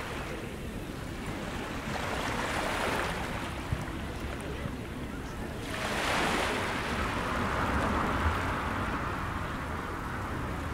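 Sea waves washing onto a sandy beach, swelling twice, with a light wind.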